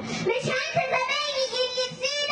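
A young girl's voice reciting verse into a microphone in a sung, chanting delivery, holding one long drawn-out note through the second half.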